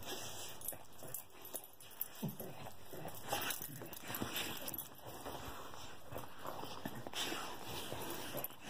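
A small curly-coated dog licking and nuzzling a person's face up close in an excited greeting: faint, irregular wet licks and the rustle of fur against the microphone.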